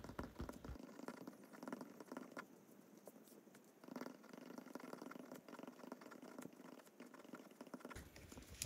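Pen writing on planner paper: faint, quick scratching strokes and small ticks as the tip moves across the page.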